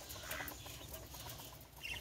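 Faint calls from caged quail: a soft call about half a second in and a brief higher chirp near the end.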